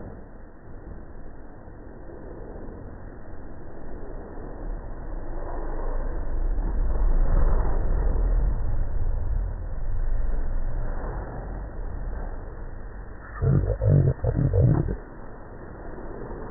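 An air-powered wrench in the mechanic's hand on the strut-top nut, run in four or five short, loud, growly bursts near the end. Before that, a low rumble swells and fades over several seconds.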